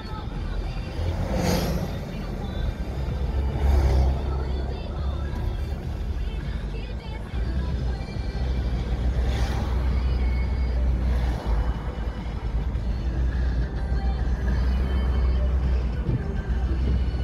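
Car interior road and engine noise while driving, a steady low rumble, with vehicles passing by in a swish about a second and a half in (an oncoming double-decker bus) and again around four, nine and eleven seconds in. Music runs faintly beneath.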